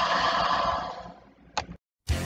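A sound-effect burst of rushing noise that fades away over about a second and a half, then one short burst, then it cuts off to silence.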